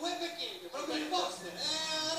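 Speech only: men talking into microphones on a stage, heard through a television's speaker.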